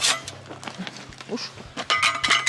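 Steel drywall knife being handled: a sharp clack at the start, then light scattered clicks and another few sharp clicks near the end, with brief vocal sounds between.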